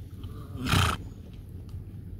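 A horse's snort: one short, loud, breathy burst a little after half a second in, over a steady low rumble.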